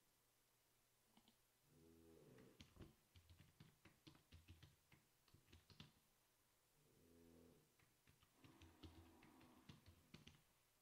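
Faint computer keyboard typing: quick runs of key clicks, one run about two seconds in and another near the end. A short low hum comes just before each run.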